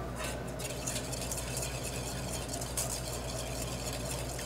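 Ramps and spring garlic sautéing gently in bacon fat in a stainless pan over a gas flame: a soft steady sizzle with fine crackles, over a steady low hum.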